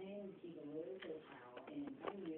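Faint, muffled voices talking in the background, too indistinct to be made out as words.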